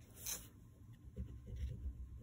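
Oil pastel stick rubbing and scraping across paper in short strokes, with one brief, sharper scratch just after the start.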